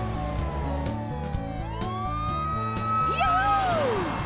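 Cartoon emergency-vehicle siren wailing over background music: the tone glides slowly down, then back up and holds, and a lower tone swoops up and down near the end.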